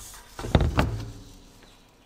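A Centramatic 400-409 wheel balancer ring set down on a table: a dull thump and a second knock about half a second in, fading away.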